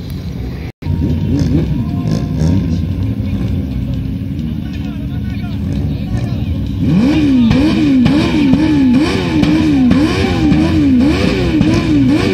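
Car engine revving over and over, its pitch rising and falling about twice a second, louder from about seven seconds in; before that a low engine rumble.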